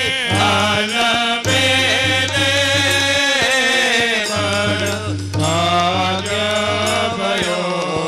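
Men's group singing of a Swaminarayan Holi kirtan, a devotional chant in long held notes, accompanied by harmonium and tabla.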